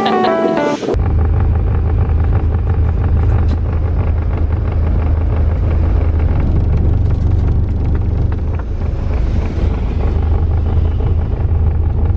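Music stops about a second in, replaced by a steady, loud low drone of a bus engine and road noise heard from inside the passenger cabin of a sleeper coach.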